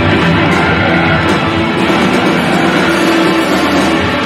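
Live rock band playing loud and full: electric guitar, electric bass and a drum kit with cymbals together.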